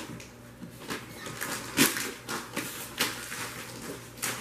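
Scattered crinkles, rustles and light knocks of wrapped presents and cardboard gift boxes being handled, with one louder short sound just under two seconds in.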